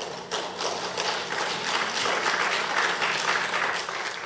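Audience applauding: many hands clapping together, tailing off near the end.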